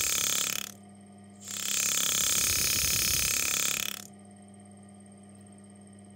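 Pneumatic engraving machine's graver hammering with a fast, even buzz, switched on and off by a homemade foot pedal's air valve. It runs until under a second in, cuts off, starts again about a second and a half in and stops about four seconds in, leaving a low steady hum.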